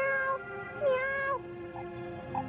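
A cartoon cat character meowing twice, each meow about half a second long, in a human voice put on to pass as an ordinary house cat.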